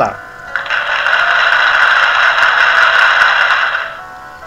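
A suspense sound effect in the pause before a quiz answer is revealed: a loud, steady, dense noise starting about half a second in and stopping just before the end, over faint background music.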